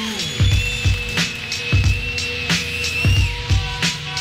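A live band playing a steady drum beat, a kick about every two-thirds of a second with snare hits between, under held electronic tones that slide in pitch, with no vocals.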